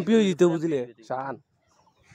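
A man's voice, with a wavering pitch, that stops about a second and a half in.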